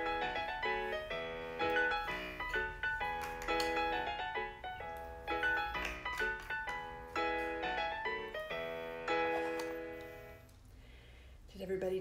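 Solo piano music for a ballet class, with struck notes and chords in a steady rhythm; it fades out about ten and a half seconds in.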